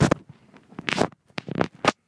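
Handling noise of the recording camera: about five short, loud scratching rubs in under two seconds, with quiet gaps between.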